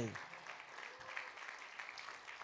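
A church congregation applauding in answer to a call to give praise, faint against the preaching.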